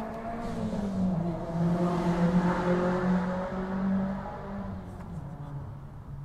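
A motor vehicle passing nearby: a steady engine hum with tyre noise that swells about two to three seconds in and then fades away.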